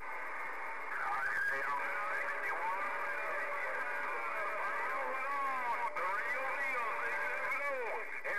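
A distant station's voice received over a Galaxy radio's speaker, squeezed into a narrow band and warbling so that the words are hard to make out, typical of a weak long-distance skip contact. A steady whistle runs under the voice through the middle part.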